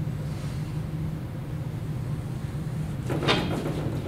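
Steady low room hum; about three seconds in, a short scraping clatter of a long wooden straightedge being moved off a whiteboard.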